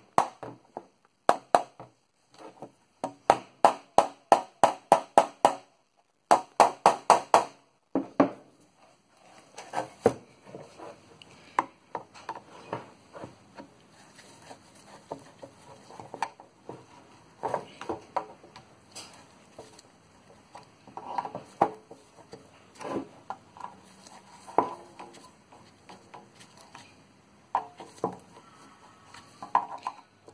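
A small hammer tapping a drift to drive the brass saw nuts home through a wooden saw handle, in quick runs of sharp taps, about three a second, over the first eight seconds. After that come softer, irregular knocks and clicks.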